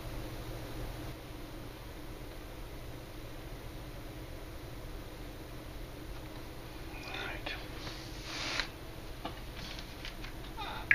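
Steady low room hum, with a short cluster of soft, hissy sounds about seven to nine seconds in.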